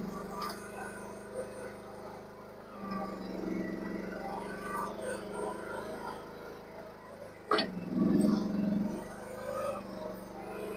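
Mini excavator's small diesel engine running at a distance, its note rising and falling as it works. About three-quarters of the way through comes a sharp crack, and the engine right after it is at its loudest, working hard under load.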